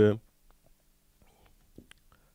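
A man's voice finishing a spoken word, then a pause of near silence with a few faint clicks near the end.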